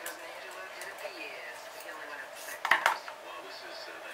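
A few sharp metal clinks, bunched together about two and a half seconds in and the loudest thing heard, from a hand arbor press and small steel parts as a ball bearing is pressed into a model engine's heated aluminium crankcase.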